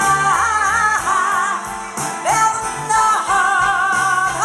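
A woman singing a slow song through the PA with a live band with piano, holding long notes with a wide vibrato.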